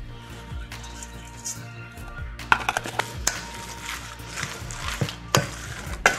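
Utensils knocking and scraping against a stainless steel mixing bowl as seasoning goes into a ground-meat filling and it is stirred, with sharp clinks coming more often in the second half.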